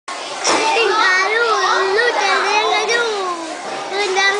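Children's voices talking and calling out in high, wavering tones.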